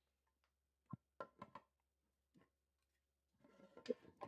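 Near silence, broken by a few faint clicks and knocks of plastic mold pieces being handled and set on the bench: four about a second in, and a small cluster near the end.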